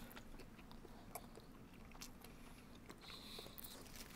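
Faint chewing and a few small mouth clicks from people eating a soft white-bread sandwich of egg, cheese and cream; otherwise near silence.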